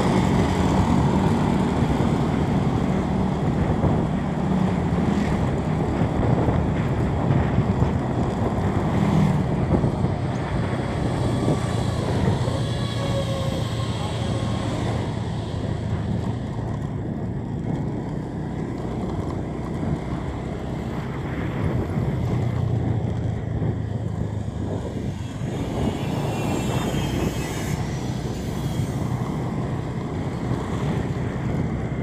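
Steady low engine and road rumble from a vehicle travelling along a street, with a faint wavering engine note from passing traffic about halfway through.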